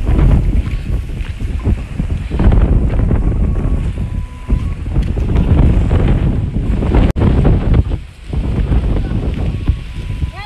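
Strong wind buffeting the microphone in gusts, a loud low rumble with short lulls about two seconds in and again near eight seconds.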